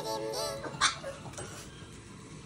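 Music from the TV show stops about half a second in; a pug then gives one short, sharp bark a little under a second in, the loudest sound here.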